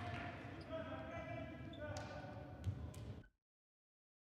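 Futsal game sound in a sports hall: players' voices and a held shout, with a few sharp ball strikes on the court. The sound cuts off abruptly near the end.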